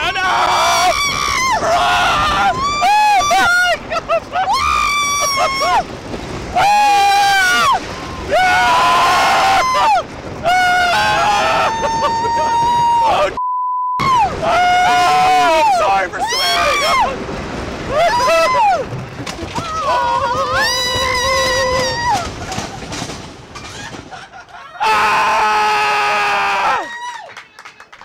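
Roller coaster riders screaming and yelling in long, wavering cries, one after another, with a sudden brief dropout about halfway through.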